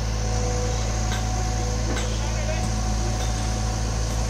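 Excavator's diesel engine running steadily with a low, even hum.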